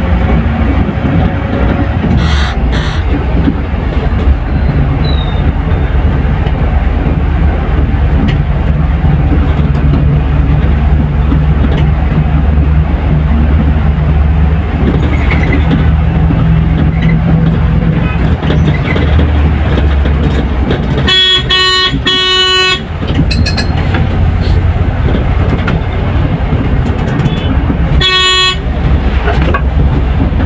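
Volvo coach at highway speed, heard from inside the cabin: a steady low engine and road rumble. A vehicle horn sounds in two short blasts about two-thirds of the way through and once more near the end.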